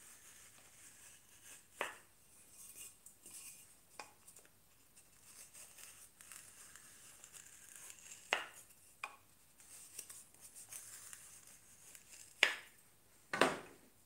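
Wooden pencil marking gauge being run along the edges of a board to mark a width line: faint scratching of the pencil on the wood, broken by a few sharp knocks as the board and gauge are turned and handled, the two loudest near the end.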